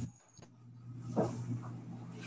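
A low steady hum on an online-meeting audio feed, briefly cutting out near the start, with a short "Oh" about a second in.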